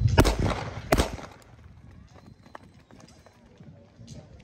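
Starting pistol fired for a sprint start: a sharp bang, then a second shot under a second later. Quieter outdoor background follows.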